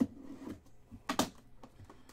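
Plastic shrink wrap on a trading-card hobby box being cut and torn open: a knock at the start, then a short crinkling rip about a second in, among small clicks and scrapes.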